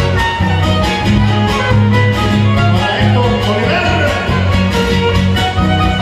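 A trio huasteco playing live in an instrumental passage of a son huasteco: a fiddle carries the melody over rhythmically strummed guitars, with no singing.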